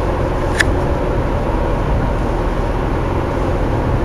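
Steady road and engine noise of a moving car, heard from inside the cabin, with one brief click about half a second in.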